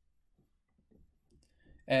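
A few faint, soft clicks from a computer mouse being moved and clicked, otherwise near silence; a man's voice starts speaking right at the end.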